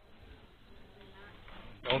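Quiet office background with faint distant voices, then a voice abruptly and loudly saying "Don't" near the end.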